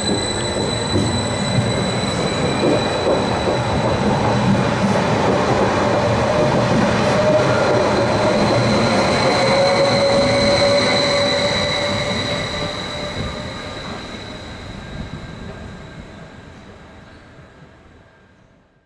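Stadler FLIRT 3 electric multiple unit pulling out along the platform: a whine climbing in pitch over the first few seconds as it gathers speed, with a steady high tone over the rumble of wheels on rail. The sound holds until the last car has passed, then fades steadily away.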